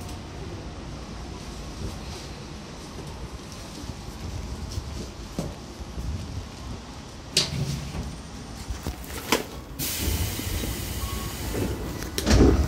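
Tobu 10000 series electric train heard from inside the car while running: a steady low rumble of wheels on rail, with sharp clacks about seven and nine seconds in and a louder rush of noise from about ten seconds in.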